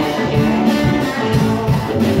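Live rock band playing: electric guitars and bass holding sustained chords over a steady drum-kit beat.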